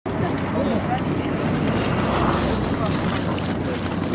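Several people talking at once in the background of an outdoor group, over a steady low rumble and noise.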